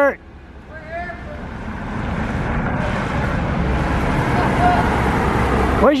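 Road traffic noise from a passing vehicle, swelling steadily over several seconds.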